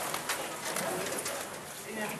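Low, indistinct chatter of several people talking at once in a room, with a few small knocks.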